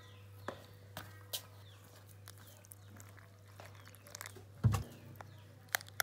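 Quiet background with a steady low hum. A few faint light clicks sound near the start, and a duller soft knock comes about three-quarters of the way through.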